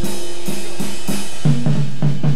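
Jazz piano trio playing live, with the drum kit's cymbals and drums to the fore. Low bass notes come in about halfway.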